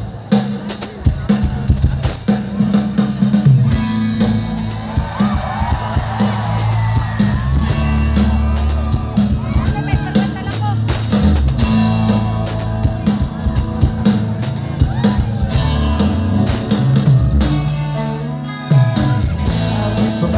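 A live rock band playing loudly through a PA system, heard from among the audience: a drum kit with kick and snare hits, electric guitars and bass guitar.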